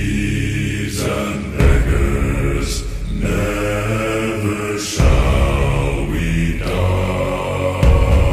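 Background music: a slow sea shanty sung by deep voices together, each long held note changing every second or two, like a chant.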